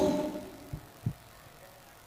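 The tail of a man's amplified voice dying away in a large hall, then quiet room tone with two faint low thumps about a second in.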